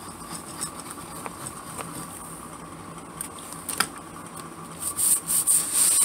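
Hands pressing and rubbing a paper envelope flap flat onto fresh glue. A few light taps at first, then a louder, quick scratchy rubbing of palms and fingers over the paper from about five seconds in.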